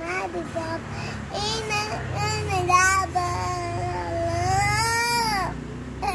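A young girl's high voice singing, with short sounds at first and then one long drawn-out note held for about four seconds that rises and falls in pitch near the end.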